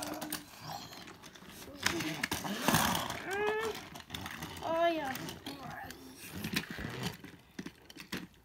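Plastic toy trains and track being handled: scattered clicks and knocks, with two short vocal sounds near the middle.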